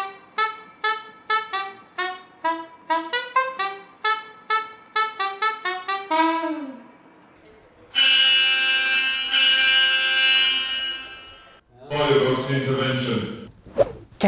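A saxophone plays a quick run of short, detached notes, ending on a note that slides down in pitch. After a brief pause, a loud, steady fire station alert tone sounds for about three and a half seconds with one short break, followed by a brief voice.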